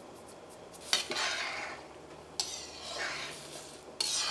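Metal spoon stirring semolina and water in a stainless steel pan, twice: each stroke starts with a sharp clink against the pan and scrapes across it for about half a second.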